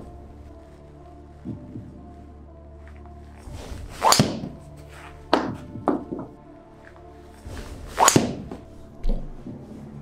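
Golf driver strikes and ball impacts against a TV screen: two loud, sharp thunks about four and eight seconds in, with smaller knocks between and just after. Background music plays underneath.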